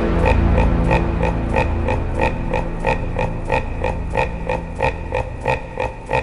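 Super-slowed Brazilian phonk in a sparse passage: a short pitched percussive note repeats about three times a second over a sustained bass that slowly fades.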